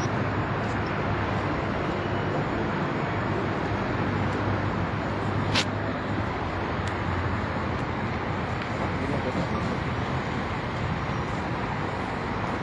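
Steady background noise of a crowded hall, with indistinct voices under it and a low hum; one sharp click about five and a half seconds in.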